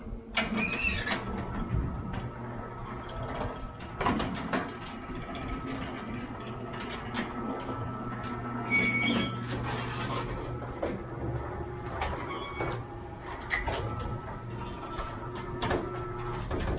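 Automatic sliding gate motor running steadily with a low hum and a thin whine, driving the gate along its track with frequent clicks, knocks and rattles.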